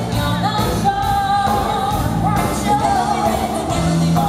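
Live pop band playing, with female lead vocals over drums, bass guitar and keyboards; a long sung note is held about a second in.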